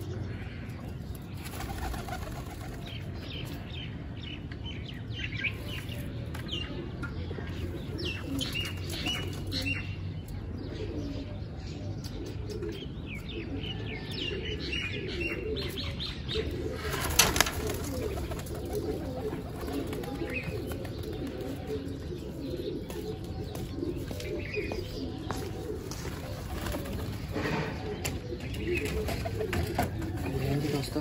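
Domestic pigeons cooing steadily, with bursts of wing-flapping and scattered bird chirps. One short, loud burst stands out about seventeen seconds in.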